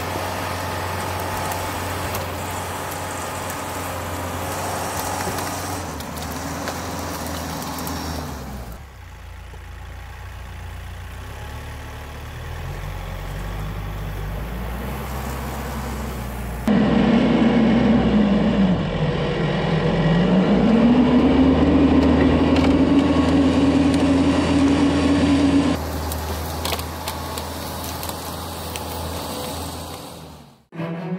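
Kioti RX7320 tractor's four-cylinder diesel engine running under load as its front loader pushes a big pile of hardwood brush. About 17 s in it grows louder and its pitch sags for a moment, then climbs back and holds steady as the engine pulls through the load.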